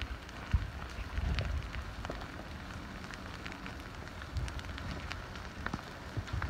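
Advancing lava flow crackling and popping over a steady hiss, with scattered sharp ticks and occasional low rumbles.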